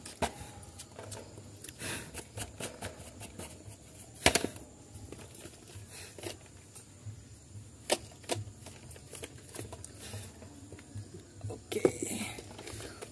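Scattered clicks and knocks of plastic pedestal-fan parts being handled and fitted together, with one sharper knock about four seconds in and another near eight seconds.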